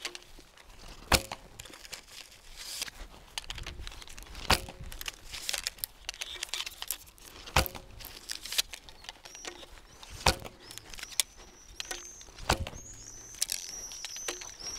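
Arrows shot from a Turkish bow striking a target close by, five sharp hits about three seconds apart.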